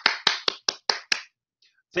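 One person clapping, a quick even run of about five claps a second that stops a little over a second in.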